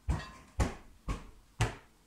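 Heavy footstep sound effect: single dull thuds, evenly spaced at about two a second, each dying away quickly.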